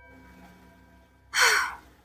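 A woman's single audible breath, a short sigh-like rush of air lasting about half a second, a little past halfway through, taken while holding a deep hip stretch.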